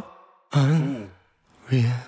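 A man's voice singing unaccompanied, with no instruments behind it: two short, breathy phrases, the first falling in pitch, each ending in silence.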